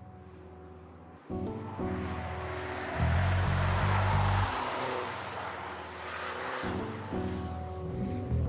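Background music with a stop-start bass line, over which a Mini Coupe John Cooper Works rushes past on track. Its noise swells to a peak about four seconds in, then fades.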